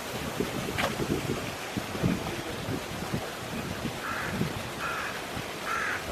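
Wind buffeting an outdoor microphone: a steady hiss with irregular low rumbling gusts, and a brief sharp sound about a second in.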